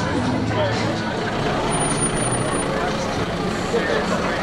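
Road vehicles crawling past at low speed, their engines running steadily, with people talking close by.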